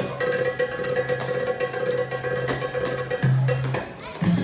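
Escrima fighting sticks clacking in quick, irregular sparring strikes, over background music with a steady held tone.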